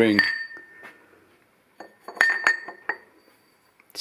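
A machined aluminium ring clinking against the steel chuck and rotary table as it is handled and set down. One ringing clink comes at the start, and three or four quick clinks come about two seconds in, each ringing briefly.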